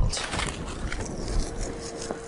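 Chopped vegetables frying in a pan on a portable gas stove, a steady sizzle, with wind rumbling on the microphone.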